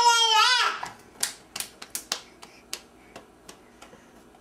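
A toddler's high, wavering voice for the first moment, then about a dozen small hand claps at roughly three a second, growing fainter.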